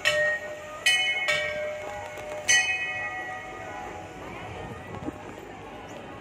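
Metal temple bells struck four times in the first two and a half seconds, two of the strikes close together, each ringing on with clear high tones and fading away.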